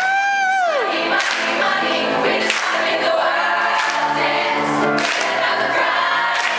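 Musical theatre ensemble singing a pop song to music with a steady beat. A single voice holds a high note at the very start that slides down and drops away under a second in, and the group singing carries on.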